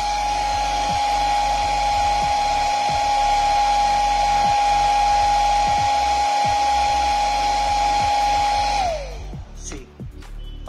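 Handheld electric hair dryer running on hot-air mode, a steady high motor whine over the rush of air. Near the end it is switched off and the whine falls away as the motor slows.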